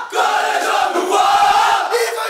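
A football team's players shouting a celebratory chant together in unison in a dressing-room huddle, a loud, dense block of many men's voices lasting about two seconds.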